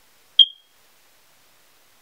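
A single short, sharp, high-pitched beep about half a second in.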